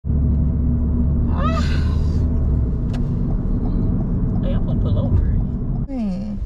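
Steady low rumble of a car heard from inside the cabin, with a brief voice sound rising in pitch about one and a half seconds in.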